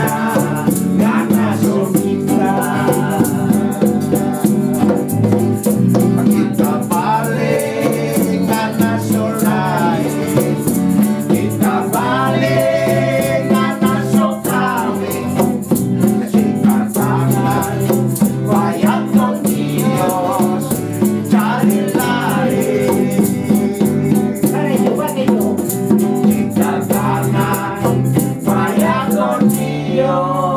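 Informal group of men singing together to strummed guitars, with a hand drum and shakers keeping a steady rhythm. The shakers' rapid rattle runs continuously under the voices.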